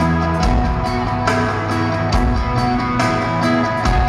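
Live pop-rock band playing a song through an arena PA: electric guitars, bass and drums with a steady beat.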